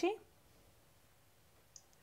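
The last syllable of a spoken question, then a pause of near silence with one faint, brief click just before the reply begins.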